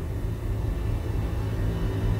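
Low, steady rumbling drone from a soundtrack underscore, with faint high tones that grow a little stronger toward the end.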